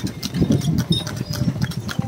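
Horse's hooves clip-clopping on a paved road as it pulls a tanga, a horse-drawn cart, in a quick run of sharp clicks.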